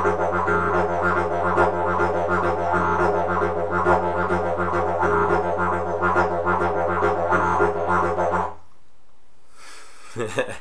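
Didgeridoo playing a low, steady drone with a rolling triplet rhythm pulsing through it, switching between the basic phrase and a variation with an extra 'da' at the start. The playing stops suddenly about eight and a half seconds in.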